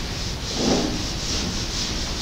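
Hand-held eraser wiping marker off a whiteboard in repeated rubbing strokes, the strongest just under a second in.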